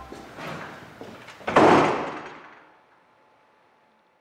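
A door swinging shut with a single bang about a second and a half in, echoing briefly in the bare room before it dies away.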